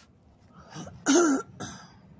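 A woman clearing her throat: a small lead-in about 0.7 s in, then one loud, rasping, throat-clearing cough about a second in, and a short final burst just after.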